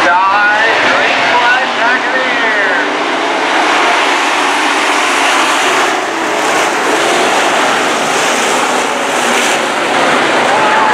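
A field of dirt-track modified race cars' V8 engines running hard around the oval. Rising and falling engine notes come in the first few seconds as cars accelerate past, then merge into the steady noise of the pack at speed.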